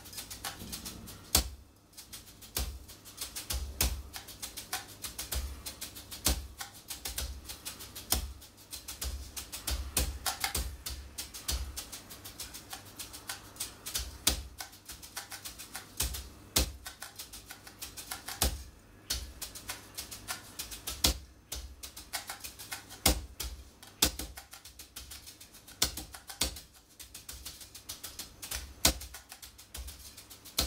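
Practice brushes playing a rudimental snare-drum solo on a soft gum rubber practice pad: a dense run of quick, light taps with louder accented strokes standing out among them.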